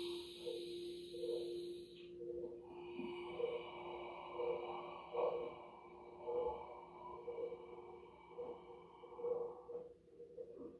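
Meditation breathing over a soft ambient tone: a steady low hum with gentle pulsing tones about once a second. A hissing breath out through pursed lips fills the first two seconds, then a longer, softer breathy sound runs until near the end.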